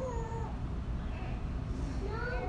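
A woman crying, a high, wavering whimper near the start that falls in pitch.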